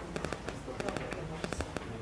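Irregular crackling clicks, several a second, over a low murmur of voices in a meeting room.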